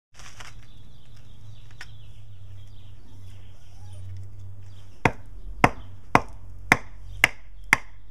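A fixed-blade knife being driven down into the top of a short upright log to split it: six sharp wooden knocks about half a second apart, starting about five seconds in.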